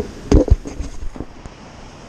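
Two sharp knocks in quick succession about a third of a second in, followed by a few lighter clicks.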